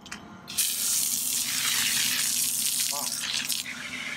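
Rinse water from a dump-station standpipe gushing into a flexible RV sewer hose to flush it out. It starts suddenly just over half a second in as a loud, steady hiss and eases a little near the end.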